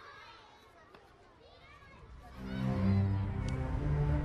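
Faint children's voices at play, high calls and shouts heard from a distance. A little over two seconds in, music with low sustained notes comes in much louder over them.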